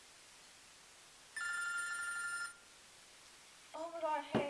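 A phone ringing once: a single steady electronic ring lasting about a second, starting about a second and a half in.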